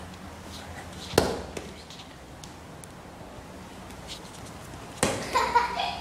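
A football kicked on a hard floor: one sharp thump about a second in, then little sound for several seconds. Near the end another thump, followed by a child's voice.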